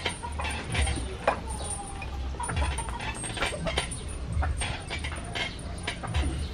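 Steel chains hanging from homemade concrete weights clinking and rattling, with sharp metallic clicks, as the weights are pressed up and lowered in repetitions.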